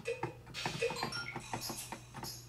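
Short, quiet notes from Finale's sound-font playback as percussion sounds are tried in turn to find a tambourine sound. A few brief notes at different pitches, with a high hiss from about half a second in.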